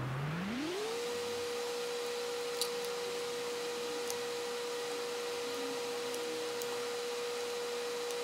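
A steady hum that glides up in pitch over the first second, holds at the higher pitch, and starts gliding back down near the end, with a few faint ticks.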